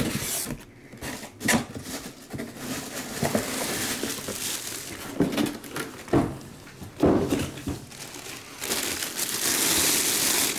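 Clear plastic bag crinkling and rustling as a full-size football helmet is worked out of it, with a few dull knocks from the box and helmet being handled. The crinkling grows louder near the end.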